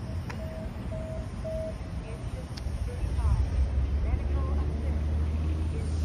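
Outdoor parking-lot noise: a low rumble that grows louder from about three seconds in, and faint voices. A short electronic beep repeats about twice a second and stops under two seconds in.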